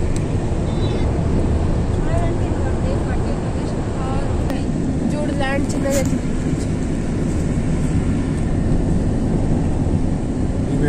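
Steady low rumble of a vehicle driving along, road and engine noise heard from inside the cabin, with faint voices talking around the middle.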